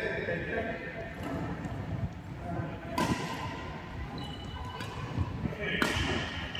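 Badminton racket hitting a shuttlecock: two sharp cracks about three seconds apart, each ringing briefly in a large hall, with lighter knocks of footwork on the court in between.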